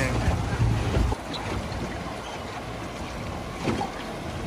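Rushing, choppy river current heard from a drifting boat, with wind buffeting the microphone as a low rumble that drops away about a second in, leaving a steady hiss of moving water.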